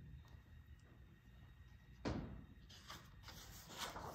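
A picture-book page being turned: one short paper rustle about two seconds in, then a few faint handling clicks near the end, in an otherwise quiet room.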